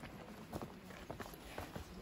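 Faint, irregular footsteps of several people walking on a path of loose flat stones.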